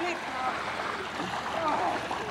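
Water swishing and sloshing around the legs of a man and a small child wading into deepening water, a steady watery hiss with faint voices mixed in.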